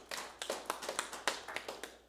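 People clapping their hands: a quick, uneven run of claps.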